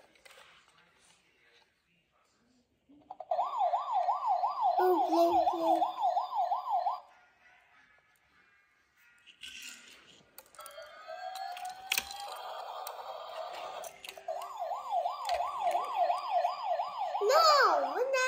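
Battery-powered toy helicopter playing an electronic wailing siren through its small speaker, rising and falling about three times a second, in two bursts of about four and three seconds. Between them come other electronic toy sounds and a click.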